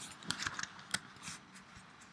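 Handling noises close to the microphone: a string of small clicks and rustles, the sharpest about a third of a second in and again just before the one-second mark.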